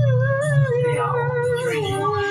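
A goat giving one long, wavering bleat that falls slowly in pitch, over a low pulsing bass hum.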